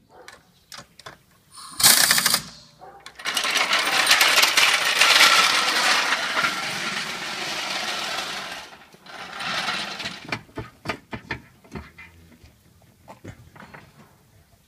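A rapid rattling power tool runs for about five seconds after a short burst, and starts again briefly near the ten-second mark. Then comes a string of sharp metallic clicks and clinks.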